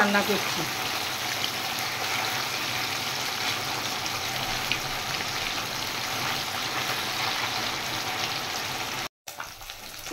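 Small whole fish frying in hot oil in a wok: a steady sizzle. A little after nine seconds it cuts off abruptly, then resumes more quietly.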